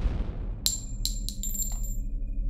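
Logo-reveal sound design: a low drone under the fading tail of a deep hit, then a quick run of bright metallic clinks with a high shimmering ring, like coins chiming.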